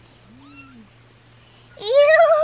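Young kittens mewing: a faint, thin rising mew about half a second in, then a loud, drawn-out wavering meow starting near the end.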